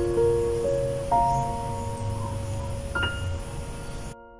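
Karaoke minus-one piano backing track playing its slow intro: single notes and chords struck every half second to two seconds, each left to ring and fade, calm and peaceful.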